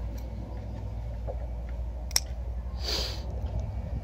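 Scissors snipping a small strawberry runner stem: one sharp click about two seconds in, over a steady low rumble, followed about a second later by a short soft hiss.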